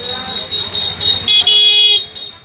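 A vehicle horn sounding in a steady high tone, then a louder, longer honk in the second second.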